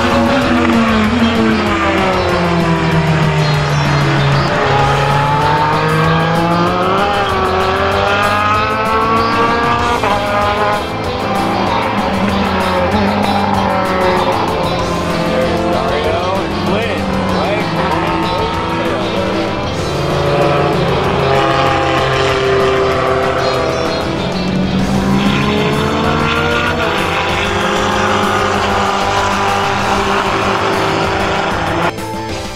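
Open-wheel formula race cars' engines going past, the pitch falling and rising in long sweeps as they lift and accelerate again, several times over.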